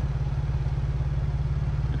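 Ford Bronco engine idling: a steady low rumble with a fast, even pulse.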